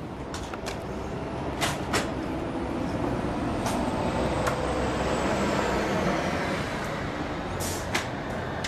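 A few sharp clicks and clunks from a van's side sliding door and its latch being worked by hand, the loudest near the end, over a steady rushing background noise that swells in the middle.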